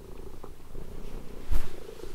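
Domestic cat purring steadily while being stroked, with a single soft thump about one and a half seconds in.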